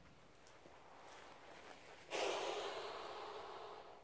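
A person breathing out close to the microphone: a soft hiss that starts suddenly about two seconds in and fades away over the next two seconds.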